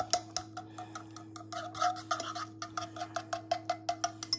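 Metal whisk beating a thick sour cream gravy in a nonstick saucepan, clicking rapidly and evenly against the pan, about six clicks a second.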